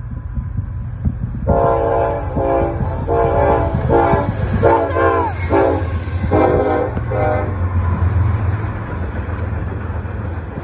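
Diesel locomotive horn played in a rapid series of about seven short chord blasts: an engineer's horn show. Under it the locomotives' diesel engines and wheels rumble past at close range, swelling near the end.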